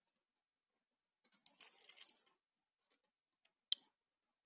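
Dead silence, then a short scuffling of handling noise against the microphone and a single sharp click near the end, as the recording starts.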